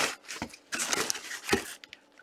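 Nylon drawstring bag rustling and crinkling as it is pulled up and off a cardboard-boxed mini helmet, in uneven bursts, with a couple of light knocks from the handling.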